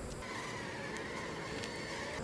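Honey bees buzzing around an open hive and a frame lifted from it: a faint, steady hum.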